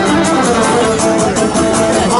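Live Cretan syrtos dance music: laouto lutes strumming a fast, even rhythm with a bowed string melody held over it.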